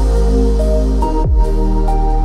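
Lo-fi hip-hop instrumental: mellow sustained chords over a steady deep bass, with one low drum hit about a second in.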